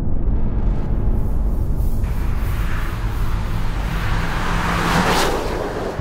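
Renault Mégane GT driving at speed: a steady low rumble with a rushing noise that builds to a loud peak about five seconds in, as the car passes close by.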